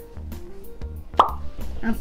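Background music with a steady beat, with a single short pop about a second in.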